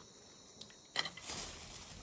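Snake tongs snap shut with a single sharp click about halfway through, followed by a brief rustle of dry leaf litter as the tongs grab the snake. A faint, steady insect hiss sits behind it.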